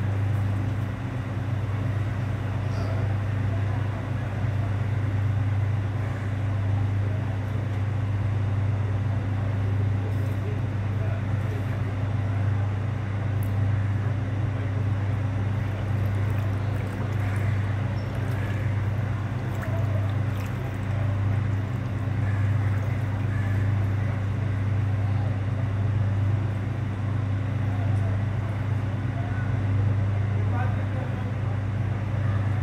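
An engine running steadily at idle, a constant low drone, with people's voices indistinct in the background.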